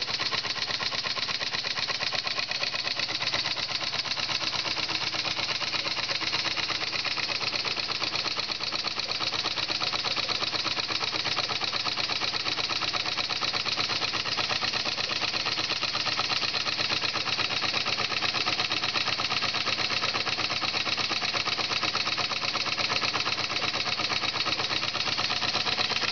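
Model steam engine running fast and steady on 15 psi of steam from its electric boiler, its governor disconnected, giving a rapid, even beat.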